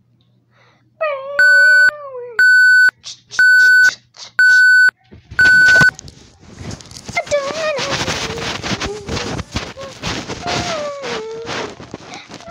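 Five loud electronic beeps at one steady pitch, about one a second, starting a little over a second in, with a child's voice over the first of them. Then a loud rushing noise with a child's voice in it.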